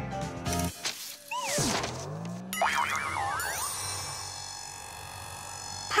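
Cartoon sound effects over music: wobbly, springy gliding tones about a second in and again between two and a half and three and a half seconds, with a low rising glide in between. A sustained shimmering high chord follows.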